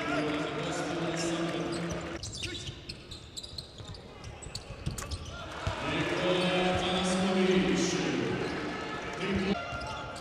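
Live court sound of a basketball game in a sports hall: a ball bouncing on the hardwood floor and scattered sharp knocks, over sustained voices from the stands. The sound changes abruptly about two seconds in, again near six seconds and again near the end, where the highlight edits cut between plays.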